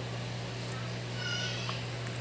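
A short, high-pitched animal call, about a second in, with a small click, over a steady low hum.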